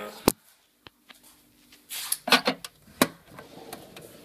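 Metal tin cans knocking and clinking together in a kitchen cupboard as an item is put back among them: a sharp knock early, then a burst of several knocks and clatter about two to three seconds in.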